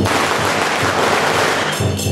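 A string of firecrackers going off in a dense, rapid crackle that cuts off suddenly shortly before the end, with percussion music faintly underneath.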